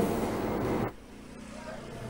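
Steady background hiss from the studio microphone, which cuts off suddenly a little under a second in at an edit. Low, quiet room tone follows.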